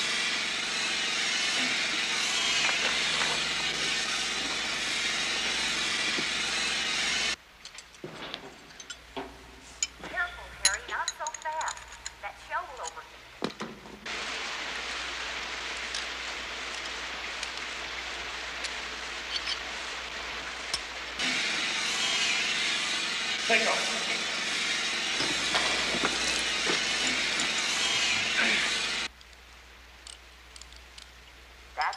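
Steady, noisy machine roar with a hiss on top, from a motorized rig driving PVC pipe down into the ground. It drops out sharply about seven seconds in, leaving scattered knocks and clanks. It comes back more quietly about halfway through, grows louder again past twenty seconds and cuts off just before the end.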